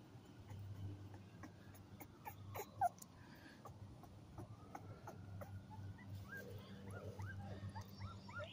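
Two-week-old American Pit Bull Terrier puppy giving faint, short whimpers and squeaks at scattered moments, the loudest about three seconds in.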